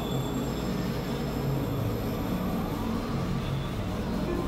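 Experimental electronic noise drone: a dense, steady wash of sound with held low notes and a few thin, high whistling tones sustained above it.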